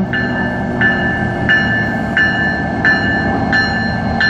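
A warning bell rings about once every 0.7 seconds over the low rumble of a pair of approaching CN SD70M-2 diesel locomotives.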